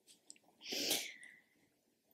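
One short, quiet, breathy puff of air from a woman, less than a second long, with no voiced sound in it.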